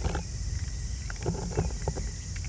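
Raccoon dog kits eating dry kibble: a run of irregular short crunches and clicks over a low rumble.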